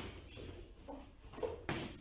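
Front kicks and footsteps on a training mat: a sharp thud right at the start as a kick lands on the partner's body, quiet shuffling of feet, and a louder thud near the end.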